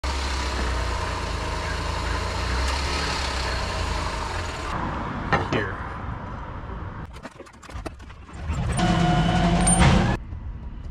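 Vehicle engine running with a steady low rumble, which cuts off abruptly about halfway through. Then come a few light clicks and knocks from an aluminium skid plate being handled under the car, and a louder steady hum of several tones near the end.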